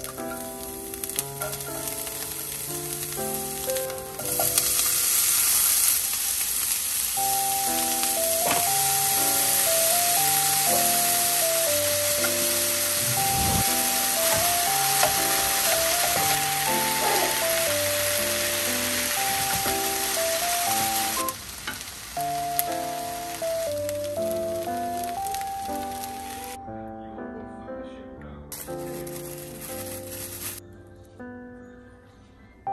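Food sizzling in oil in a frying pan as green onions, then kkakdugi and rice, are stir-fried with a wooden spoon. The sizzle grows louder about four seconds in and fades over the last several seconds. Background music plays throughout.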